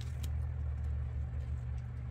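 A steady low hum, with a couple of faint light clicks near the start as tweezers handle small paper pieces on a card.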